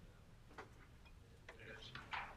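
Near silence: room tone with a few faint clicks, one about half a second in and a small cluster near the end.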